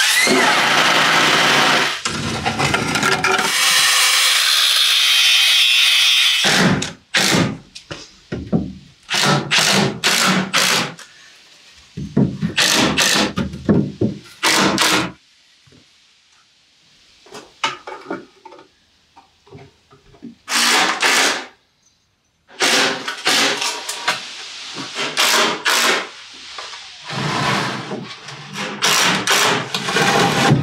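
Tool work on wood: about six seconds of continuous power-tool noise, then runs of short scraping strokes about a second apart, with a pause in the middle.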